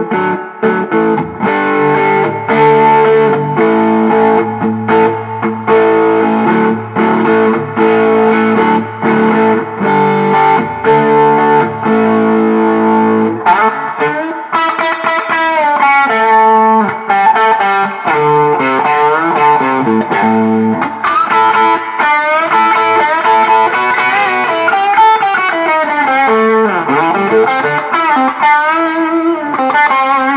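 1985 Gibson ES-335 through a Foxrox FR100 overdrive pedal and a 1965 Fender Deluxe Reverb amp, played with a crunchy overdriven tone. For about the first 13 seconds it plays rhythm chords. Then it switches to single-note lead lines with string bends, with the guitar's volume rolled up for more sustain.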